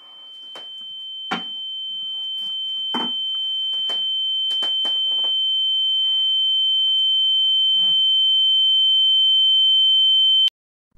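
A steady high-pitched ringing tone, a shock or tinnitus effect added in the edit, swelling slowly louder throughout, with a fainter lower tone beneath it. A few soft knocks sound under it, the clearest about a second and a half in and at three seconds.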